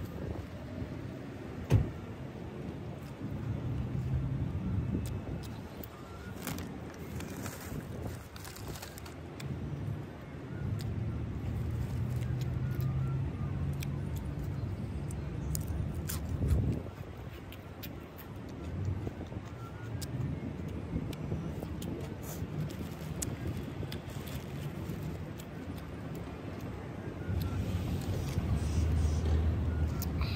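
Chewing and mouth sounds from eating a meatball sub on flatbread, with scattered sharp clicks, over a low hum of car engines nearby.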